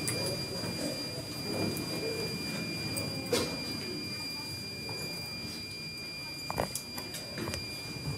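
Indistinct murmur and shuffling of a congregation in a mosque hall over a steady high-pitched electronic whine, with a few sharp clicks, the loudest about three seconds in and more near the end.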